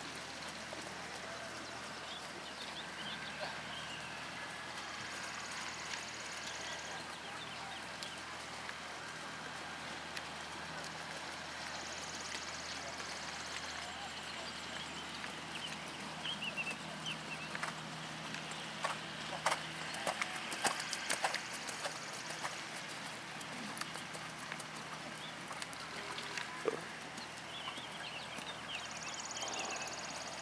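A horse trotting on a sand arena's footing, its hoofbeats soft over a steady outdoor background, with a cluster of sharper clicks about two-thirds of the way through.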